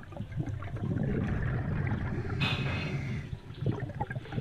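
Underwater sound of a diver's breathing picked up by the dive camera: a low, steady bubbling rumble of exhaled air, with a short hiss about two and a half seconds in.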